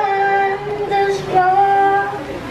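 A young boy singing a slow song solo into a microphone, holding long, steady notes.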